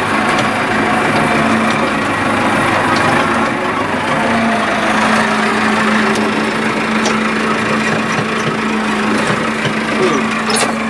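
Massey Ferguson tractor's diesel engine running steadily with an even drone, heard from inside the cab while driving.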